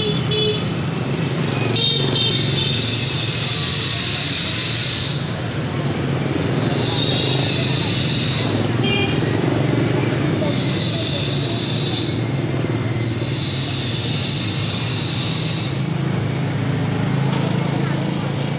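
Motorbike traffic passing along a city street, a steady low drone of small engines. Over it, a loud high-pitched buzz comes and goes in stretches of two to four seconds.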